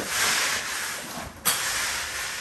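Plastering tools scraping and rubbing over a freshly rendered cement wall in strokes about a second long, with a sharp knock about one and a half seconds in.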